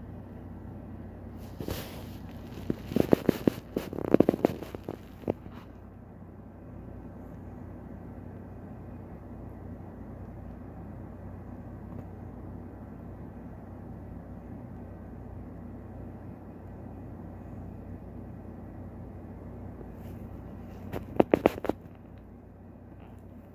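Handling noise from a phone filming against a plastic container: a cluster of sharp clicks and knocks from about two to five seconds in, and another just before the end, over a steady low hum.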